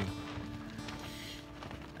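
Soft background music of a few long held notes.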